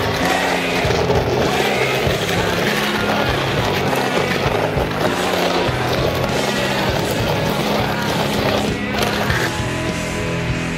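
A skateboard rolling and pushing on rough concrete, under loud backing music. The music changes about nine seconds in, into grunge-style rock.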